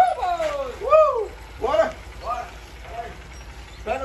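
A person's voice giving about five high, wordless calls or yells that swoop up and fall back in pitch, the loudest near the start and about a second in, over a faint steady low hum.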